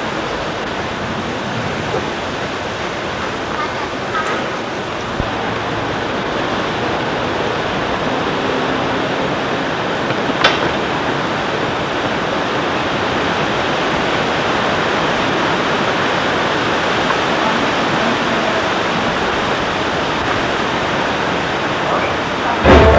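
A steady rushing noise, with one sharp click about ten seconds in.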